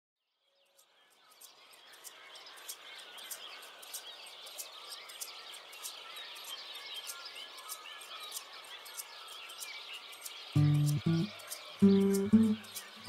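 A chorus of many small birds chirping, fading in from silence over the first couple of seconds. About ten and a half seconds in, music with low plucked notes comes in over it.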